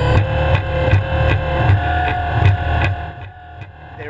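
Background electronic music with a steady beat and held tones; it drops away about three seconds in.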